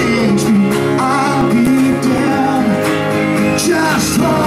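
Live country-rock band playing an instrumental passage: strummed acoustic guitar over electric guitars and drums, with a trumpet melody on top. The music is loud and steady.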